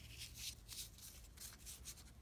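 Faint, soft swishes of trading cards sliding against one another as a stack is fanned through by hand, several quick strokes.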